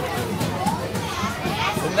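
Children's voices chattering in the background, with a man's voice beginning to speak just at the end.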